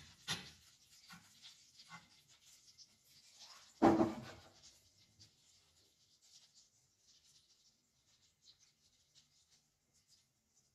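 Butter and oil sizzling and crackling in a nonstick pan as spoonfuls of cauliflower fritter batter are dropped in from a metal spoon. There is one louder scrape or thump about four seconds in, and the crackling thins out in the second half.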